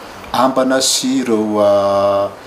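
A man speaking slowly in a calm, level voice, drawing out his vowels into long held sounds.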